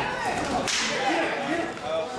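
A single sharp hand slap of skin on skin, the sound of a tag being made between wrestlers, with voices calling out around the ring.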